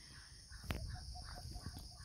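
Quiet rural ambience: a steady high-pitched drone of insects, with a few faint short animal calls around the middle and one soft tap.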